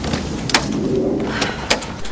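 A low, steady cooing bird call over outdoor background noise, with two sharp clicks, one about half a second in and one near the end.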